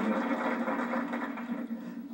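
Audience noise in a hall after a successful stage demonstration, a dense even wash of crowd sound that dies away near the end.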